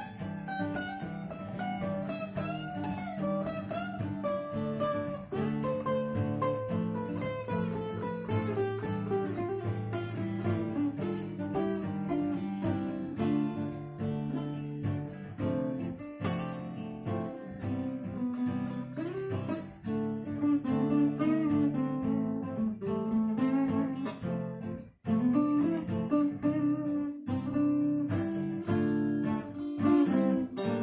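Two acoustic guitars playing an instrumental break: steady strummed chords underneath with a picked melody line moving above them. The playing stops for a split second a little before the end, then carries on.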